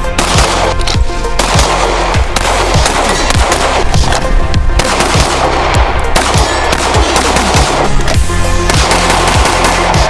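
A Glock pistol fired in quick strings of shots, laid over loud background music with a heavy, regular beat.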